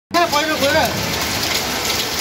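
Steady rain falling on a paved hillside road, with a person's voice briefly over it in the first second.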